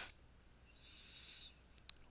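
Near silence: room tone, with a faint high-pitched squeak lasting under a second about a second in and two tiny clicks near the end.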